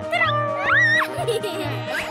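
Cartoon background music with a pulsing bass line, over which a high-pitched, meow-like cartoon voice gives a short two-note exclamation, the second note higher, ending about a second in.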